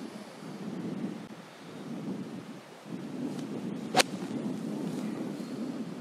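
Wind buffeting the microphone, then a single sharp crack about four seconds in: a pitching wedge striking a golf ball out of long rough grass.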